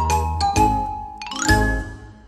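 Intro jingle music: bright chiming notes over a low bass, then a rising sweep into a final hit about one and a half seconds in that rings out and fades.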